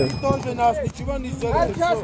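Men's voices calling out, quieter than the talk around them, with a low rumble of wind and handling noise on a phone microphone about halfway through.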